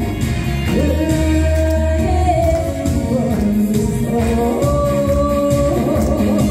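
A woman singing into a handheld microphone over instrumental accompaniment, amplified through loudspeakers, with long held notes.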